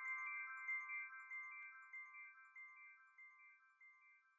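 Outro jingle's bell-like chime tones ringing on with a few light tinkles, slowly fading out.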